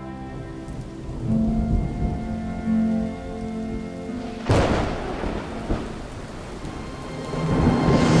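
Storm: heavy rain falling, with rumbles of thunder in the first half and a sharp thunderclap about four and a half seconds in, under music that swells near the end.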